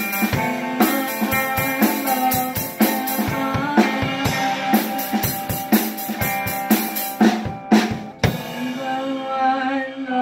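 Live band jam: a drum kit plays a steady beat on bass drum, snare and cymbals under held pitched instrument notes. The drums stop about eight seconds in and the held notes ring on.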